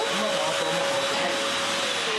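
Stick vacuum cleaner running steadily on the floor, a constant whine over the rush of its motor.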